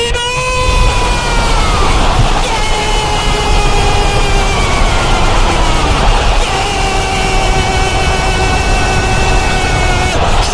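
A radio football commentator's long drawn-out goal cry. One note is held for about six seconds, sliding slowly lower, then after a breath a second long held note runs on, over steady background noise.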